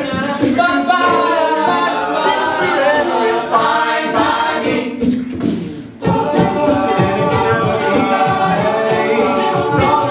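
A cappella group singing, a male lead voice over the group's backing vocals with no instruments. The voices drop away briefly about five seconds in, then come back in with a heavier low end about a second later.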